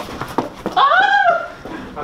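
A person's long, animal-like cry that rises and then falls in pitch, about a second in, with two short knocks before it.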